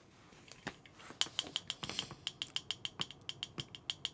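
Rapid light clicking of fingers on the top of an aluminium drink can, about five sharp clicks a second, starting about a second in.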